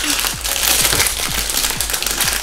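Foil blind-bag packets being torn open and crumpled by hand, a dense crackly crinkling with no pauses.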